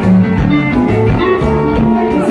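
Loud band music: a Haitian konpa dance groove with guitar prominent over a moving bass line.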